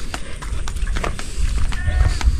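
Wind buffeting the microphone with a low rumble, over soft footsteps of a person walking, about three steps a second.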